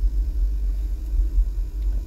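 Low, steady rumble inside a Toyota Sequoia's cabin, with no music playing.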